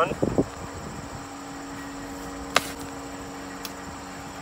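Steady outdoor insect chirring, like crickets, over a low steady hum. A single sharp click comes about two and a half seconds in, with a fainter one about a second later.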